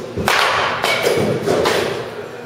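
Baseball bat swishing through the air in a dry practice swing, heard as a few short rushes of sound with thuds underneath.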